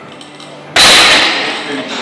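A loaded barbell with bumper plates racked onto the steel rack's hooks: one sudden loud clang about three-quarters of a second in, ringing off over about half a second.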